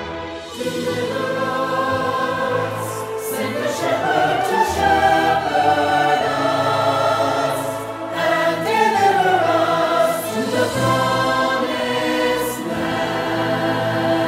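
Virtual choir of many voices singing long, layered held chords, the voices swelling upward about four seconds in and sliding down again near nine seconds.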